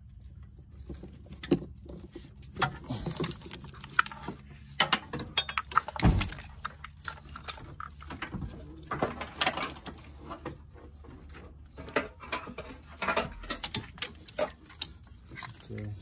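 Irregular clicks, knocks and light metal clinks of hand tools and plastic wiring connectors being handled while the engine's wiring harness is unplugged.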